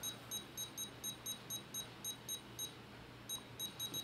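Futaba 14-channel FASSTest radio transmitter beeping as its dial is turned: short high beeps about four a second, one for each step as the elevator value is raised. The beeps pause briefly after about two and a half seconds, then come again more quickly.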